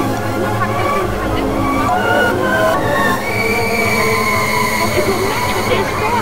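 Eerie ambient horror music: a low drone under layered sustained tones, with a low rumble about a second in and a high held tone entering about halfway through.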